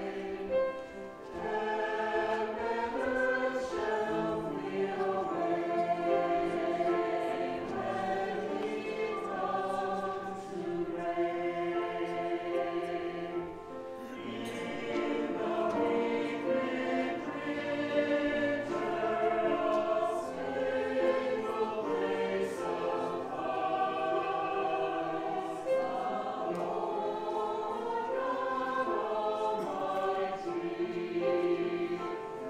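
Mixed church choir of men's and women's voices singing together, with a brief lull between phrases about 13 seconds in.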